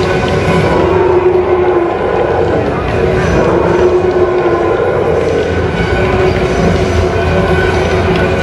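Loud arena loudspeaker sound: a voice over the public-address system mixed with long, droning held tones, over a steady low rumble.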